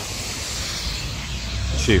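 Street traffic on a wet road: a steady hiss of tyres on slush with a low engine rumble that grows near the end as a car passes.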